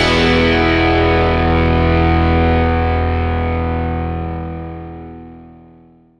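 Background rock music ending on a final distorted electric guitar chord that is held and rings out, fading away over the last few seconds.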